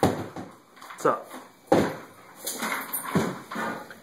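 A voice making short sounds whose pitch falls, three times, with no clear words.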